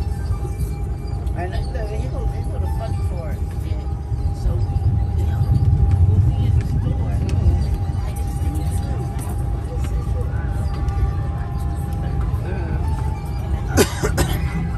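Outdoor boardwalk ambience: music playing and people's voices in the background over a steady low rumble, with a sharp click just before the end.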